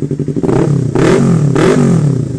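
Yamaha R3 parallel-twin engine breathing through a Yoshimura Alpha slip-on muffler, revved up from idle in two throttle blips, the pitch rising and falling with each, peaking about a second in and again near the end. The exhaust note has a somewhat tearing rasp.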